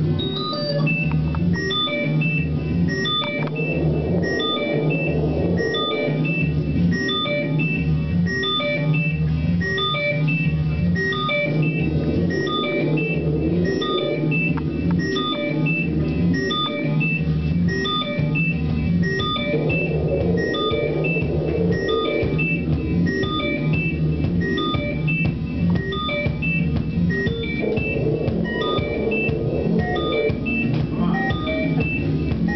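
Electronic music played on synthesizers: a steady pulsing bass line under a repeating sequence of short high notes, with a fuller mid-range layer that swells in and drops out several times.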